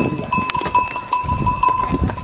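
Bells on a passing string of loaded pack animals ringing over and over, with hooves clopping on a stone-paved trail.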